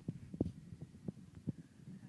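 Irregular low thumps and rumble of buffeting on the microphone, with one stronger knock about half a second in.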